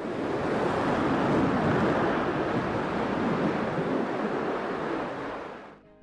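Blue Origin New Shepard booster's BE-3 rocket engine firing during its powered vertical landing: a steady rushing noise that fades out near the end.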